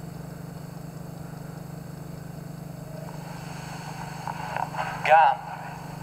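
A steady low hum with faint hiss, no music or footsteps heard. Near the end a man's voice begins chanting the step count, 'gamba'.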